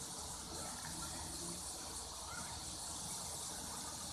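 Steady outdoor background noise: an even high hiss over a low rumble, with no distinct events.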